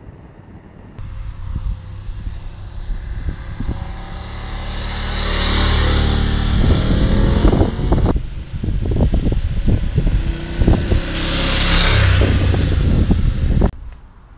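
BMW F850GS parallel-twin motorcycle engine running as the bike rides past. The sound builds over the first few seconds and swells twice, each time with a rushing hiss.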